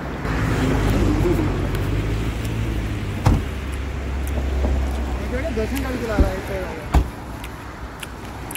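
A car's engine idling with a steady low hum, with a few sharp knocks: one about three seconds in and two near the end, the last of them a car door shutting.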